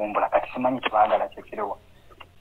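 Speech: a man talking, pausing near the end.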